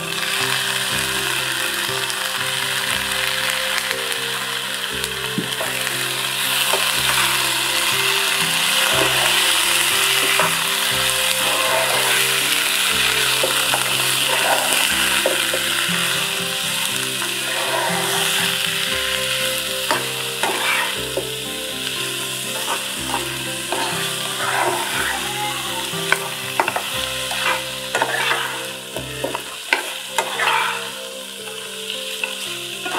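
Raw chicken pieces sizzling in hot oil in a non-stick frying pan, freshly added and being stirred with a silicone spatula. The sizzle is steady and strongest in the first half, with the spatula's scrapes and taps on the pan standing out more toward the end.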